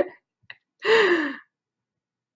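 A woman's short, breathy laugh, falling in pitch, about a second in.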